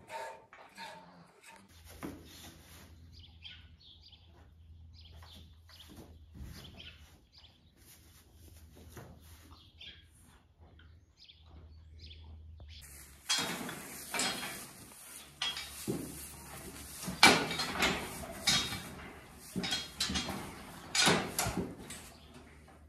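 Faint, short bird chirps over a steady low hum, then from about 13 seconds in a run of loud rustling and knocking, the sound of people and calves moving in straw bedding.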